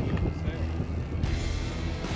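Low steady rumble of a sportfishing boat's engines with wind and water noise, under background music.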